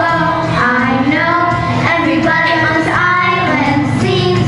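Young girls singing together into microphones over musical accompaniment.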